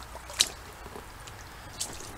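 A sharp click about half a second in and a fainter one near the end, over a low steady rumble.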